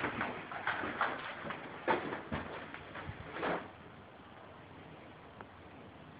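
Footsteps and camera-handling noise: irregular short knocks and rustles for about three and a half seconds, then only faint room tone.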